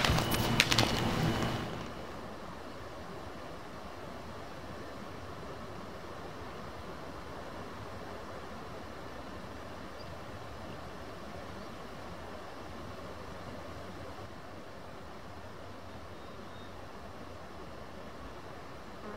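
A short loud flurry of clicks and knocks in the first second or two, then steady, even outdoor background noise with no tune or voice in it.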